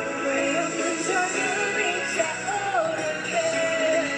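Live pop song over an amplified sound system: a woman sings a gliding melody into a microphone over steady backing music, holding one long note near the end.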